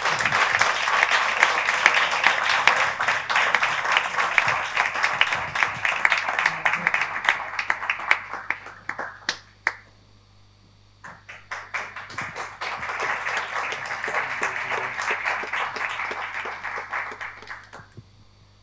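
Audience applause: a round of clapping that dies away about nine seconds in, then after a second or two of quiet a second round that stops near the end.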